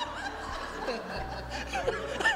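A man and a woman laughing and chuckling together.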